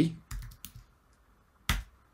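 Computer keyboard typing: a few light keystrokes in the first second, then one louder keystroke near the end as the Return key runs the command.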